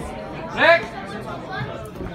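Voices and chatter, with one loud, short shout about half a second in.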